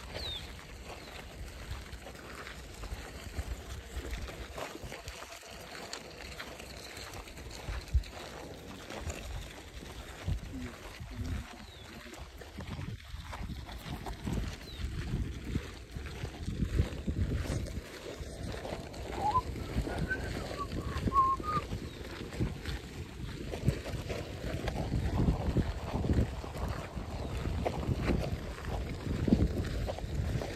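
Footsteps of several people walking on a dirt and gravel track, as irregular scuffs and crunches over a low rumble, growing louder in the second half.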